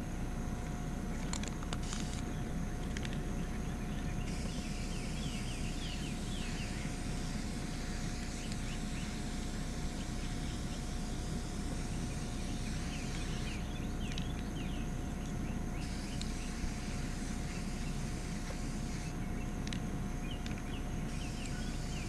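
Aerosol spray-paint can hissing in long bursts of several seconds as black paint is sprayed onto a concrete curb, over a steady low outdoor rumble. Faint bird chirps are scattered through it.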